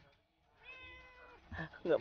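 A ginger domestic cat meowing once, a single drawn-out meow held at an even pitch for almost a second, starting about half a second in.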